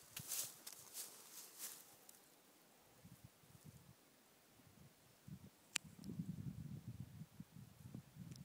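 Faint outdoor ambience: a few soft rustles in the first two seconds, one sharp click about six seconds in, then low, irregular rumbling to the end.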